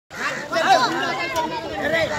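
Several people talking at once, their voices overlapping.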